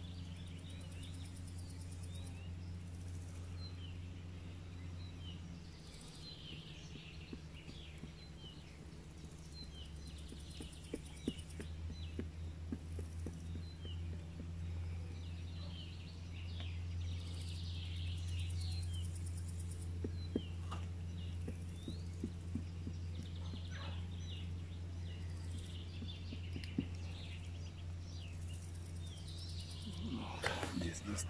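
Small birds chirping on and off over a steady low hum, with a few soft taps in the middle.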